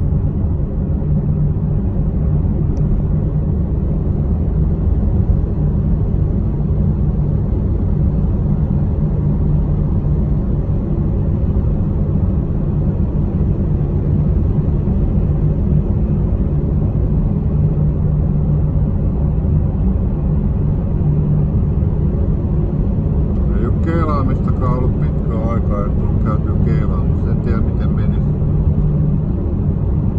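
Steady low rumble of engine and road noise inside a moving car's cabin, with a constant low hum.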